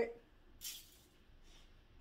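A pinch of salt thrown over the shoulder, the grains scattering with one brief hiss about half a second in.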